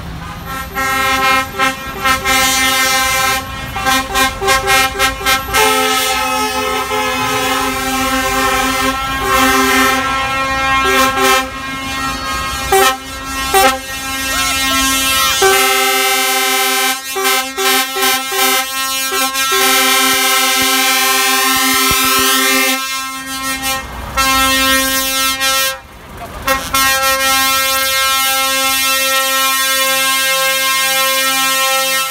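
Several truck air horns blowing at once in long, overlapping blasts of different pitches, with a run of short toots in the first few seconds and a brief lull just before the last few seconds.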